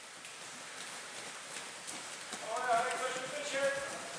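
Many bare feet running on a padded gym mat: a quick, uneven patter of footfalls from a group jogging a warm-up lap. A voice calls out over it from a little past halfway.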